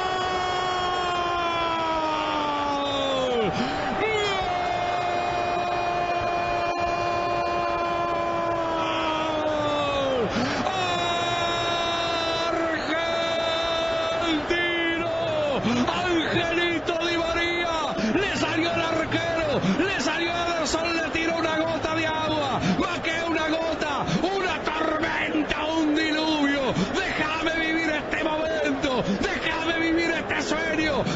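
Football radio commentator's drawn-out goal cry: several long held shouts of 'gol', each falling away at its end, through the first half. Then rapid, excited shouting from about halfway.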